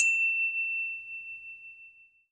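A single high, bell-like ding struck once as the logo jingle ends, ringing on one clear tone and fading away over about two seconds.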